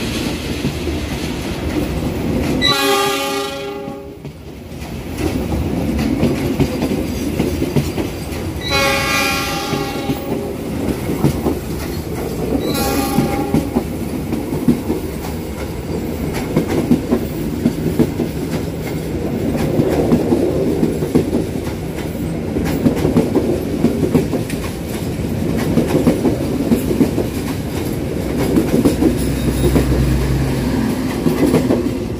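KA Lodaya passenger coaches running through at speed on the adjacent track at close range: a steady rumble with wheels clattering over the rail. A diesel locomotive horn sounds three times in the first half, two longer blasts and then a short one.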